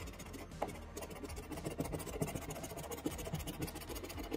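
Scratch-off lottery ticket being scratched with a coin-like token: a rapid run of short rasping scrapes as the coating is rubbed off the play area.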